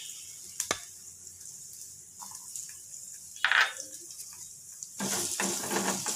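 Fresh coconut pieces sizzling faintly in hot oil in a steel kadai, with a sharp click under a second in and a brief louder noise midway. From about five seconds a spatula stirs the pieces round the pan, and the sizzling and scraping grow louder.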